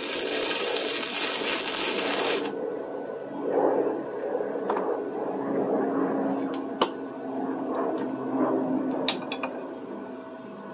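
Electric arc welder crackling and sizzling as a bead is laid into holes in a steel farrier's rasp. The arc cuts off about two and a half seconds in. Quieter handling noise and a few sharp clicks follow as the piece is worked in the vise.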